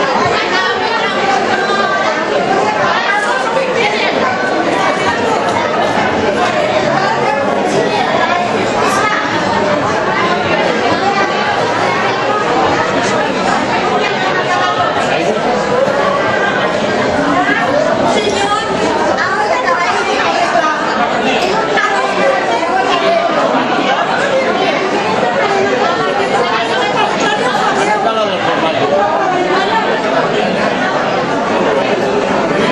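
Crowd chatter: many overlapping voices of a seated audience talking at once in a large hall.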